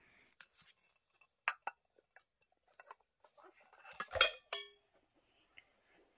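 A metal gelatin ring mold and a ceramic plate clinking and knocking as set gelatin is turned out of the mold: a few light clicks, then a louder clatter with a short ring about four seconds in.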